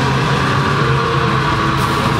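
Black metal band playing live at loud volume: a dense, continuous wall of distorted guitars and drums over a heavy low drone.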